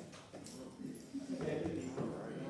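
Faint off-microphone talking from several people, with a quiet "thank you" near the end and a few small knocks and shuffles as people move about.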